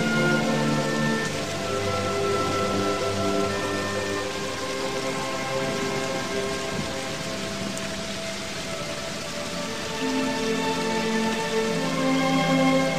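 Background music of slow, sustained chords over a steady rain-like hiss, dipping a little past the middle and swelling again near the end.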